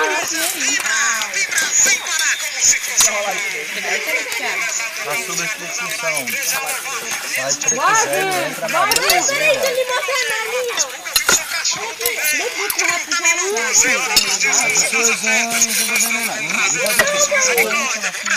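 Several people talking over one another, with spoons and lids clinking against metal pots and plates as food is served.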